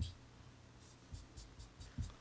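Marker pen writing on a sheet of paper: a faint series of short scratchy strokes as the tip is drawn across the page, with a soft knock at the start and again at the end.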